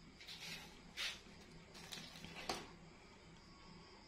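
Faint handling of metal hand tools: a few brief rustles and light clicks as a vernier caliper is picked up and laid against a knife blade. The sharpest click comes about two and a half seconds in.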